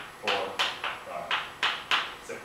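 Chalk writing on a blackboard: a quick run of short, sharp chalk strokes and taps, about six in two seconds, as letters are written.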